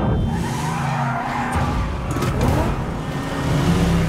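Car-chase sound effects: engines revving and tyres skidding, with crossing pitch glides in the middle.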